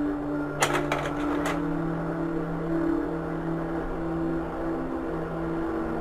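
Soft sustained music with slowly changing low notes. About a second in comes a short run of sharp mechanical clicks, a Kodak Carousel slide projector advancing a slide.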